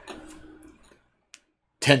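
A pause in speech with faint room tone and a single short click about a second and a half in; a man's voice resumes near the end.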